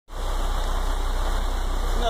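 Heavy rain falling steadily, with a vehicle engine idling as a low, steady rumble underneath.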